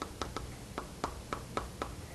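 Chalk tapping and clicking on a blackboard while writing: a quick, irregular string of about eight sharp taps.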